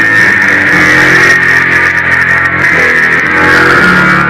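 Semi-hollow electric guitar played loud through a small combo amplifier, with held notes that change about a second in and again near the end, over a steady bright wash of noise.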